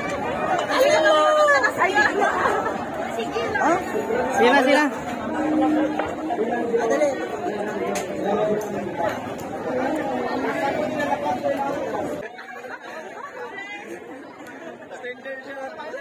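People talking in lively chatter, which turns quieter after about twelve seconds.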